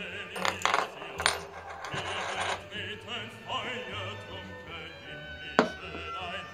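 Small metal coins clinking on a wooden game board as they are flicked and dropped: a cluster of clinks in the first second and a half, and one sharp clink near the end.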